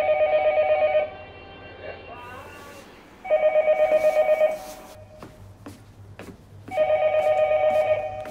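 Telephone ringing: three trilling electronic rings of about a second each, a few seconds apart, with a few light clicks between the later rings.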